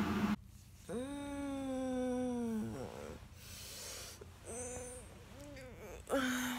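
A drawn-out whining vocal call, held for about two seconds and dropping in pitch at its end, followed by two short rising-and-falling calls.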